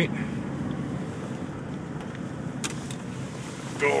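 Steady road and engine noise heard from inside a car's cabin as it drives through a right turn, with a single sharp click about two and a half seconds in.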